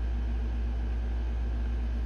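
Steady low hum of room background noise, even throughout, with no distinct sounds standing out.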